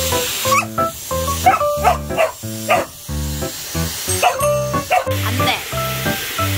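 A border collie barking several times at a running hair dryer, whose steady hiss of blowing air sits under the barks. Background music with a steady beat plays throughout.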